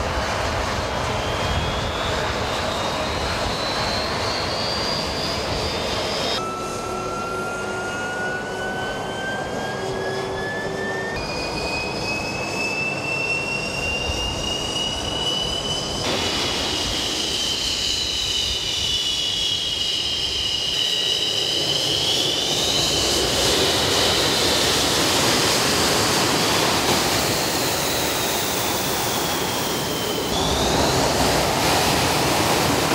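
MiG-29 fighters' twin Klimov RD-33 turbofan engines running up, with a steady jet rush under a high turbine whine that rises in pitch. Later, whines from more than one engine bend down and back up as the engines settle and the jets move off.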